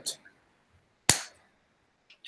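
A single sharp click about a second in, dying away within a few tenths of a second, between pauses in a video call.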